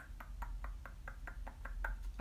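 A quick, even run of light taps, about five a second.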